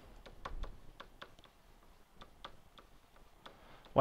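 Faint, irregular clicks and light taps of a stylus on a pen-input writing surface as a word is handwritten, about a dozen over a few seconds.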